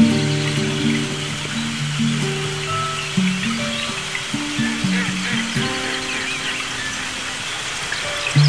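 Slow classical guitar instrumental, single plucked notes ringing out one after another over a steady wash of flowing water.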